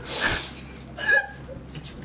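A man coughing and choking in two short bursts, one at the start and one about a second in, just after downing a shot of apple cider vinegar whose sharpness catches in his throat.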